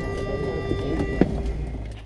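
Steady cabin hum and whine of a McDonnell Douglas MD-88 airliner parked at the gate, over a low rumble. There is a sharp click a little over a second in, after which the whine drops away.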